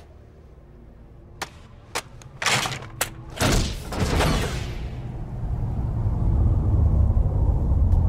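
A few sharp metallic clicks from a gun-rack clamp, then a deep rumble that swells up about halfway through and grows loud toward the end.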